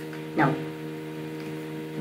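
A steady low-pitched electrical hum of several held tones that never changes, with one short spoken word about half a second in.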